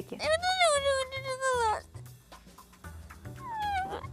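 A long, high wailing cry that holds its pitch and then falls away, followed near the end by a shorter cry sliding down in pitch.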